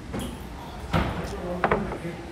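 Two knocks, about a second in and again shortly after, as drinking glasses are set down on a table, with a short vocal sound of tasting after the second.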